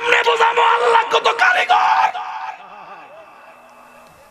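A man wailing loudly into a PA microphone, one long held cry of about two seconds that distorts the amplification, then quieter wavering sobs.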